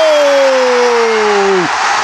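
A football commentator's long drawn-out goal cry, one held vowel slowly falling in pitch and breaking off near the end, over a cheering stadium crowd celebrating a goal.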